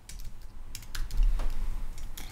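Keys being typed on a computer keyboard in a quick run of separate clicks.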